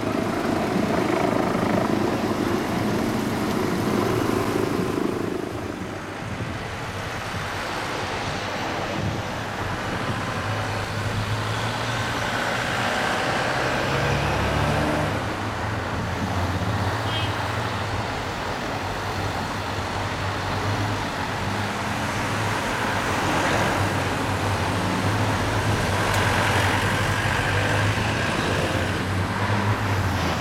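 Road traffic as police vans and motorcycles drive past: engine hum and tyre noise, with a steady low engine drone from about ten seconds in.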